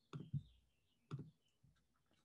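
Three faint computer mouse clicks in a small room: two close together near the start and one about a second in, as the presentation slides are brought up on screen.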